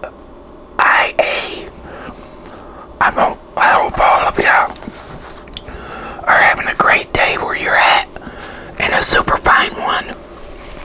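A man whispering close to the microphone, in short bursts with brief pauses between them.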